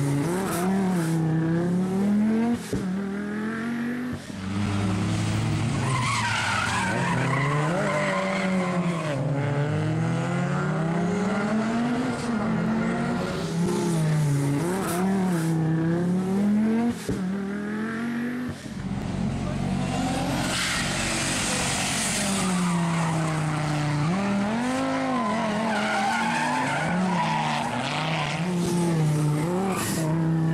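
Audi quattro rally car's turbocharged five-cylinder engine revving up and down over and over while the car is spun in circles on tarmac, its tyres squealing and skidding, loudest a little past the middle.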